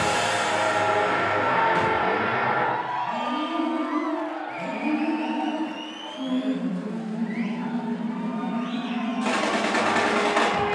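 Live rock duo of electric guitar and drum kit playing loudly. About three seconds in, the music thins to held electric guitar notes that step in pitch, with sliding tones above them. Near the end the full band comes back in loudly.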